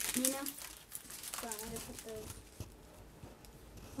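Small plastic bags of diamond-painting drills crinkling and rustling as they are handled, mostly in the first second, under brief talk.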